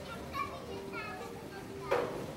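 Children's voices and shouts in the background over steady held music notes, with a single sharp knock just before the end.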